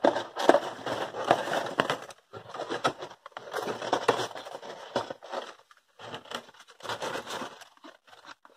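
Cardboard box and paper insert of a piston ring set being opened by hand: irregular rustling and scraping of cardboard in several short spells, with brief pauses between them.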